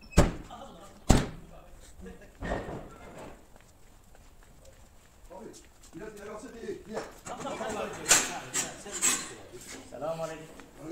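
A truck's tilting front grille panel being pushed shut: a sharp slam just after the start and a second one about a second later, then a softer knock.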